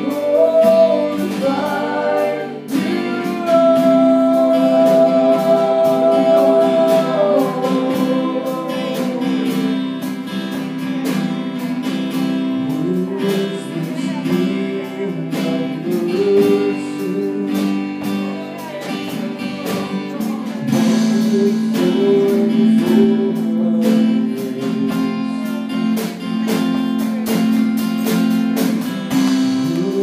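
Live worship band music: strummed acoustic guitar with singing, including a long held note a few seconds in.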